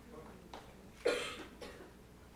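A single cough about a second in, sharp at the start and dying away quickly, with a couple of fainter short sounds just before and after it.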